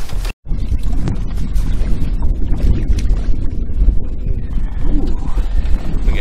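Wind buffeting the camera microphone, a loud uneven low rumble. The sound drops out completely for a split second about a third of a second in.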